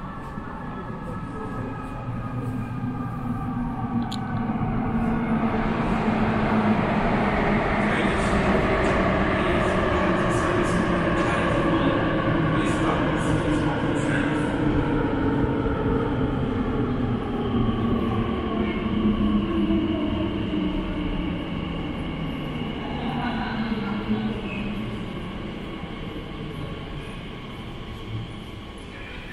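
Elizabeth line Class 345 train running through the station tunnel behind the platform screen doors. A rumble with a whine of several tones builds over the first few seconds, is loudest through the middle, and dies away near the end.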